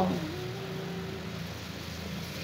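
Sliced oncom frying in a seasoned liquid in an aluminium wok, with a steady, quiet sizzle as the liquid cooks down.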